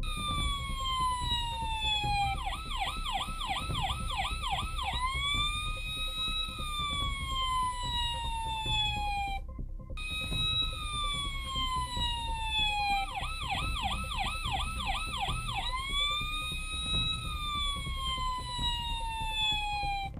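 Electronic toy siren from a Playmobil fire engine. It runs a cycle of a long falling wail, then a quick yelp of about seven rapid warbles, then a slow rise and fall. After a brief cut about halfway through, the whole cycle repeats.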